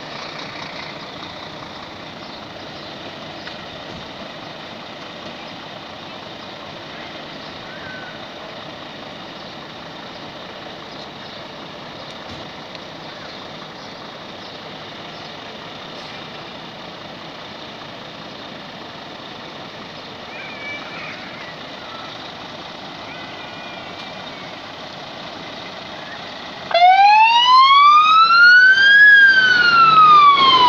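Scania P410 fire engine running steadily at standstill; about three seconds before the end its siren switches on suddenly and loudly, with a wail that rises for about two seconds and then falls.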